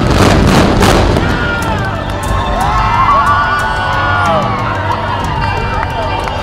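Demolition charges going off as a high-rise building is imploded: a loud burst of blasts in the first second. From about two seconds in, a crowd of onlookers cheers, whoops and whistles.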